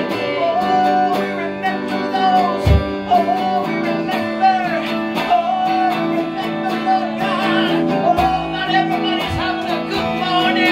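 Live worship song: electric guitar played while a man and a woman sing into microphones, with a few deep low notes under the held chords.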